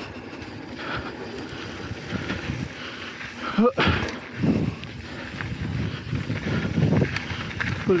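Mountain bike riding fast down a dirt singletrack: tyres rumbling over the dirt and wind buffeting the camera microphone, rising and falling in waves. A brief sharp rising sound cuts in about halfway through.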